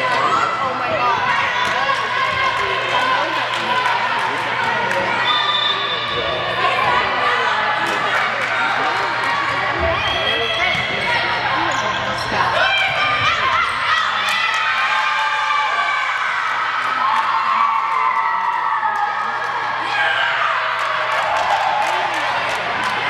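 Volleyball being played in a gymnasium: sharp hits of the ball during the rally over spectators and players shouting and cheering, the voices swelling several times. A steady low hum runs underneath.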